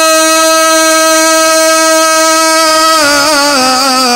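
A man's singing voice holding one long, steady note on the last syllable of a devotional naat line, then about three seconds in breaking into a wavering ornament that falls in pitch.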